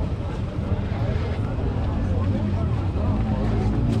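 Outdoor market ambience: background chatter of people talking over a steady low rumble.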